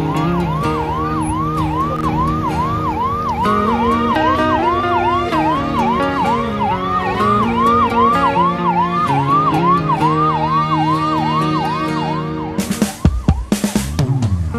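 Ambulance siren sounding in quick rising-and-falling sweeps, about two a second, over background guitar music. The siren stops shortly before the end, and a few loud irregular knocks follow.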